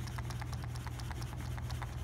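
Poker chips rattling in paper chip boxes being shaken: a rapid run of light clicks, about ten a second, as a shake test of how snugly the chips fit, over a steady low hum.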